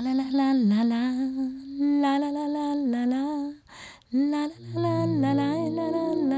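A young woman's voice singing a slow melody in long, gliding held notes, in two phrases with a brief breath between them about four seconds in. Low sustained accompanying notes come in underneath the second phrase.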